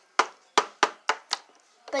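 Small plastic dolls knocking against a plastic toy pool as they are moved by hand: a quick run of about five sharp taps, fading over a second and a half.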